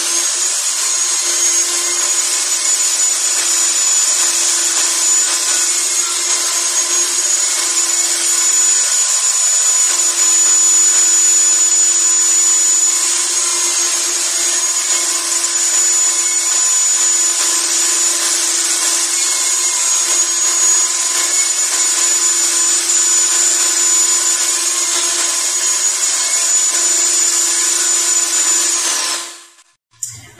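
Table saw running steadily with a high whine while a three-quarter-inch board is pushed over its eighth-inch blade, cutting a rabbet in repeated shallow passes in place of a dado blade. The whine shifts slightly in pitch a few times, and the sound stops shortly before the end.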